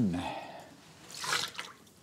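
Coolant dribbling and dripping from a just-removed car radiator, with a short noisy rush of liquid about a second and a half in.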